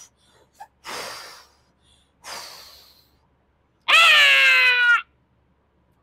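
Puffs of breath blown into a rubber balloon, heard as three short hisses. About four seconds in comes a loud, pitched squeal lasting about a second that drops in pitch and then holds.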